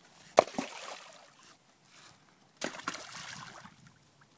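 Two rocks thrown into a river, each hitting the water with a sharp plunk and a splash about two seconds apart; the first is the louder.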